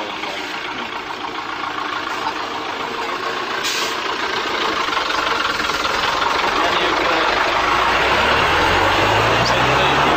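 A motor vehicle's engine coming closer and growing steadily louder, with a short hiss about four seconds in.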